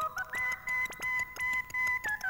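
Opening theme music: a high, pure-toned melody that steps up about a third of a second in and then holds one long high note, over a steady ticking beat of about four ticks a second.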